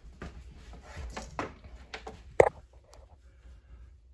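Handling noise and footsteps as a phone camera is carried: soft scattered knocks and rustles over a low rumble, with one sharp knock about two and a half seconds in.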